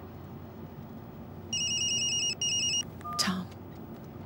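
A telephone rings electronically in two bursts, a long one then a short one, about a second and a half in, over the steady hum of a car's interior on the move. A brief short sound follows just after the ringing.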